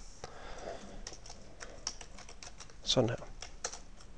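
Typing on a computer keyboard: a run of irregular key clicks as a short line is typed and entered. There is one louder brief sound about three seconds in.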